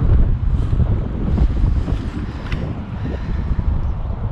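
Strong wind buffeting the microphone, heard as a loud, fluttering low rumble.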